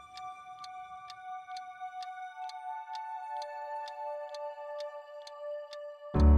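Mechanical twin-bell alarm clock ticking, about three ticks a second, over soft held music notes.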